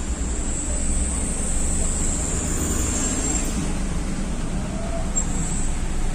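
Steady road-traffic noise: a low rumble of vehicle engines and tyres in city traffic.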